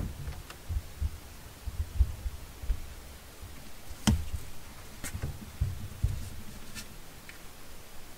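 Paper pages and a plastic glue bottle handled on a tabletop: soft low bumps throughout, with a few sharp clicks about four, five and seven seconds in.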